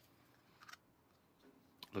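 A few faint light clicks and taps as a small plastic toy fry container is handled and set down on a plastic tray.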